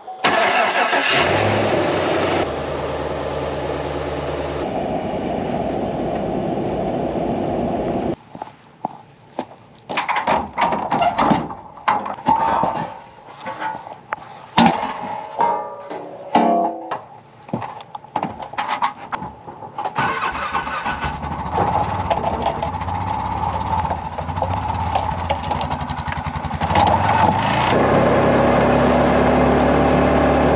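A vehicle engine starts right at the beginning and runs steadily. It gives way for a stretch in the middle to irregular knocks and clatter, then an engine runs steadily again, a little louder near the end.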